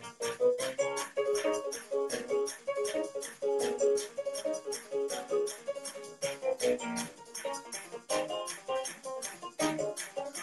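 Keyboard played live: quick runs of notes and chords, each note struck sharply.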